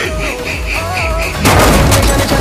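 Film trailer soundtrack: music with a man's laugh pulsing about four times a second, then a sudden loud booming hit about one and a half seconds in that rings on.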